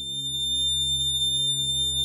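A steady, high-pitched electronic test tone at about 3600 vibrations a second, the icosahedron's 3600 degrees sounded as a frequency and heard as a high A-sharp, held over a low, gently pulsing hum.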